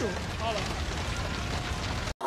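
Fire sound effect: a steady rushing noise with a low rumble, with a brief voice fragment about half a second in.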